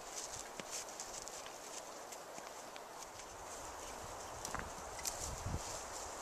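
An Abaco wild horse mare walking on a sandy forest track: soft, irregular hoof steps over a faint steady hiss.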